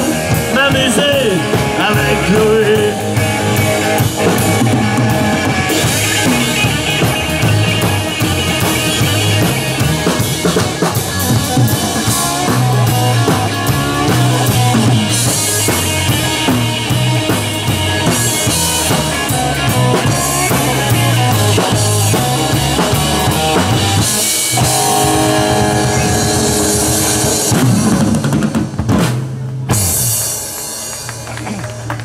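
Live rock trio playing an instrumental passage on electric guitar, bass guitar and drum kit, with a steady bass line. The band stops briefly about three quarters of the way through, then plays on to the song's close near the end.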